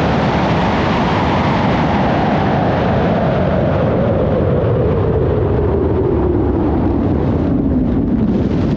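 A large high-power rocket on an N-class motor, heard from a camera riding on it in flight: a loud, steady rush of motor and air. A tone in it slowly falls in pitch, and the hiss thins out near the end.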